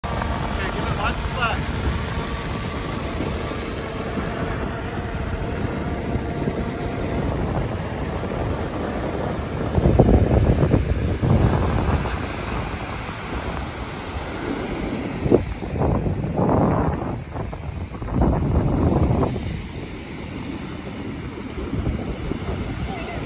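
DJI Mavic Air 2 drone's propellers whining close overhead in the first few seconds, a steady tone that rises briefly, then wind buffeting the microphone in gusts, loudest about ten seconds in and again toward the end.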